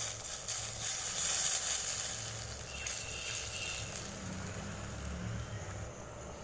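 Hot oil tempering of curry leaves and mustard seeds sizzling as it is poured from a ladle into the kulambu gravy, the sizzle dying down over the first few seconds, with a steady low hum underneath.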